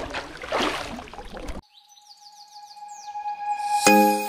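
Water splashing and sloshing as someone wades in a shallow stream, cut off suddenly about one and a half seconds in. A quick run of high chirps over a steady held tone follows, and a chiming music jingle starts near the end.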